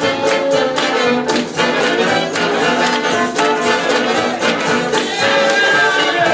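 Live jazz band playing a fast swing tune over a steady, quick beat.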